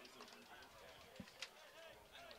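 Near silence with faint, indistinct voices in the background.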